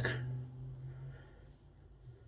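Quiet room tone: a low, steady hum that fades out about a second in, leaving near silence.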